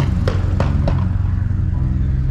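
A vehicle engine running at a steady low pitch, with a few sharp clicks in the first second.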